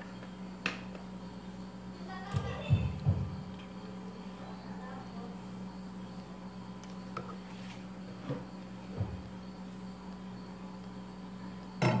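Quiet room tone with a steady low hum. A few faint soft knocks come from biscuits being handled and laid in a glass bowl, and a faint voice is heard briefly about two to three seconds in.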